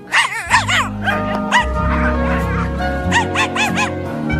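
Cartoon puppy yipping in several quick rising-and-falling yelps, in clusters near the start, around a second and a half in and again after three seconds, over background music with long held notes.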